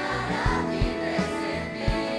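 Large youth choir singing a pop song in Catalan, many voices in unison over a steady beat with low thumps about two to three times a second.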